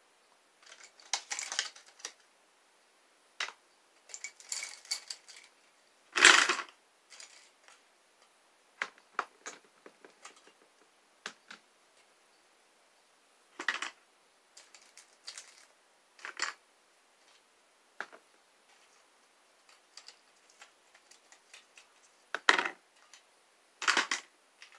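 Small makeup items and containers being picked up and set down in clear plastic organizer bins: irregular clicks, taps and short rustles, the loudest a knock about six seconds in.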